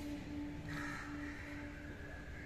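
Crows cawing faintly, starting under a second in, over a steady low hum.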